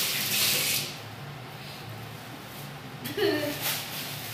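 A plastic bag rustling with a hissing crinkle for the first second, then low room noise. A woman's voice comes in briefly near the end.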